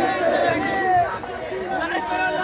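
A crowd of protesters, many voices talking and calling out over one another.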